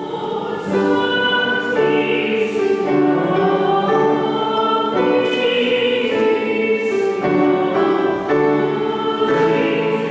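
The opening hymn sung by a choir, held chords moving from note to note every second or so.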